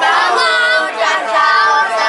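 Boys' voices singing a sahur wake-up chant together, held pitched notes without drum strikes.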